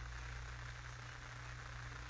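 Steady low hum with a faint hiss under it: room tone, with no other sound.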